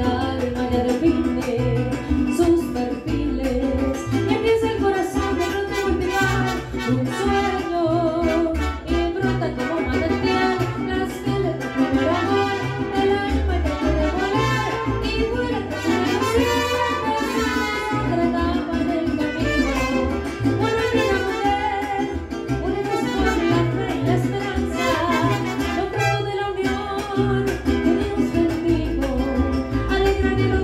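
Live mariachi band playing a song, melody lines over a steady pulsing bass.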